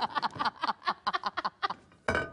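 Several women laughing together in quick repeated bursts that fade away near the end.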